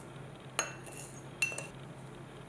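A wooden spoon clinks twice against a small ceramic bowl, a little under a second apart, while scooping loose tea leaves into a paper tea filter. The second clink rings briefly.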